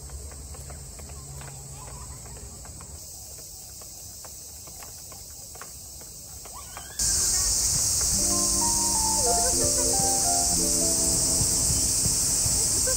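Quiet outdoor ambience with faint light taps, cut off about halfway through. A loud, steady, high-pitched chorus of insects then starts abruptly, and background music with a simple melody of held notes comes in shortly after.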